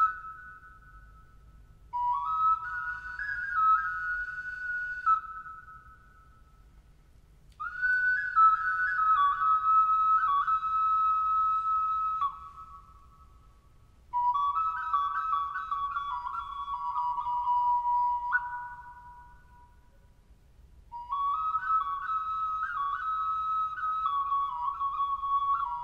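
Small ocarina played in slow, breathy-free melodic phrases of a few high notes each, stepping and sliding between pitches. Four phrases of three to five seconds, each separated by a pause of about two seconds, after the tail of an earlier phrase dies away.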